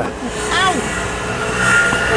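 A motor vehicle's engine running, a steady hum with a higher whine, coming up a little over a second in, just after a brief voice.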